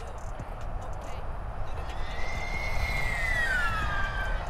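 Small sub-250 g FPV quadcopter (Diatone GT R349) on its stock propellers, making a full-throttle speed run. Its high motor-and-propeller whine comes in about halfway, swells, and drops in pitch near the end as it goes past, over a steady low rumble.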